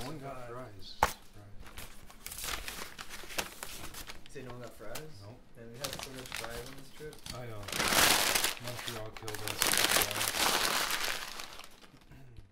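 A brown paper takeout bag being handled and crinkled, loudest in a long stretch from about two-thirds of the way in, with a sharp click about a second in. A man's voice talks on and off underneath.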